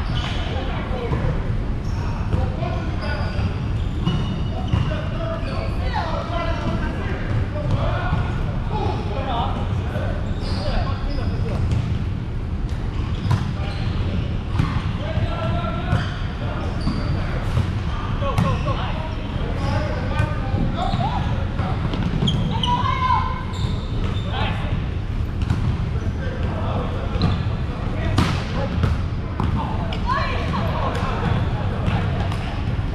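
Volleyball play in a gym: the ball is struck and hits the floor again and again at irregular intervals, among players' scattered voices over a steady low rumble.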